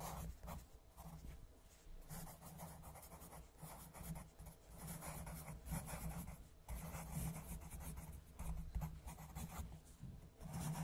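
Coloured pencil scratching on paper in many quick shading strokes, faint and continuous, with a couple of brief pauses.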